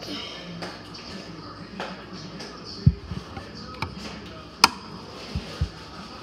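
Quiet handling sounds of magnetic putty and a small magnet worked in the hands close to the microphone: a few soft low thumps about halfway and near the end, and one sharp click about two-thirds of the way through.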